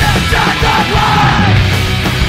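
Punk rock song: a yelled lead vocal over a loud full band with guitars, bass and drums; the vocal line drops out shortly before the end.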